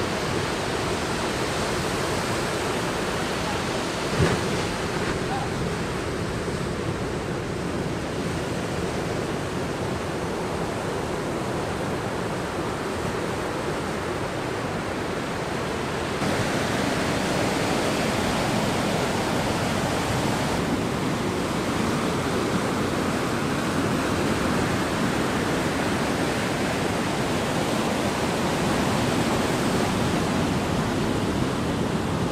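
Ocean surf: waves breaking and washing up the beach in a steady rush, with a single sharp knock about four seconds in. The rush gets a little louder about halfway through.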